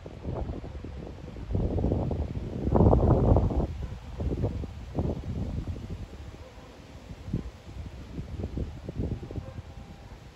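Wind buffeting the microphone in gusts, a low rumble that is loudest about two to four seconds in, followed by scattered faint low knocks.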